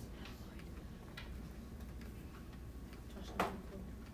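Quiet room noise with a low hum, a few faint ticks, and one sharper click about three and a half seconds in.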